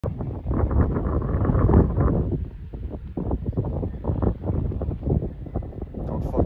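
Wind buffeting the phone's microphone in gusts, a deep rumbling rush that swells and dips irregularly.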